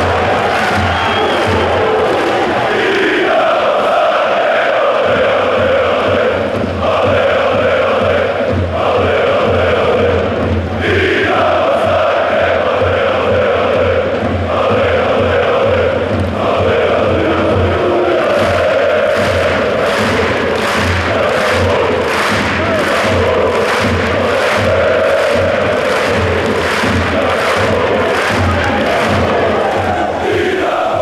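A large crowd of football supporters singing a chant in unison over a steady low beat. About two-thirds of the way through, sharp rhythmic claps join in.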